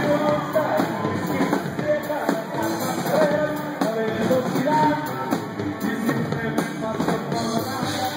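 Live regional Mexican band music played loud: a tuba bass line and guitars over drums, with a steady beat.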